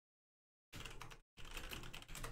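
Typing on a computer keyboard: faint, quick keystrokes in two short runs with a brief pause between, starting about two-thirds of a second in after dead silence.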